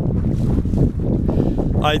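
Wind buffeting the microphone aboard a small sailboat, a loud, steady low rumble, with the slosh of choppy water under the boat. A man's voice starts right at the end.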